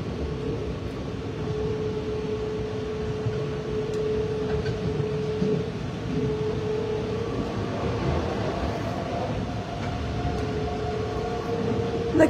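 Passenger train running, heard from inside the carriage: a steady low rumble with a steady tone over it that drops out briefly about halfway through.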